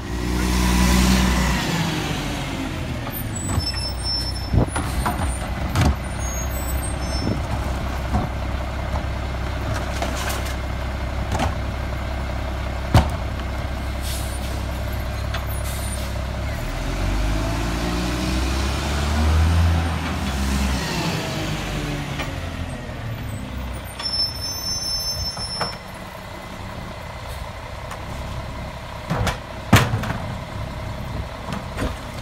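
Diesel engines of old Mack garbage trucks idling and revving up to drive the hydraulics. There is a loud rev near the start, and a rev that rises and falls for about four seconds just past the middle as the Leach rear-load packer cycles. Scattered clanks and air-brake hiss run through it.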